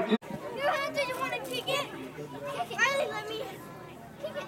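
Children's voices calling out and talking among the spectators, after a brief gap just after the start where the recording cuts.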